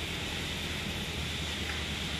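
Forklift engine running steadily with a low hum under an even hiss.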